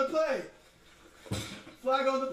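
Men's voices exclaiming without clear words, with a short sharp thump a little past the middle.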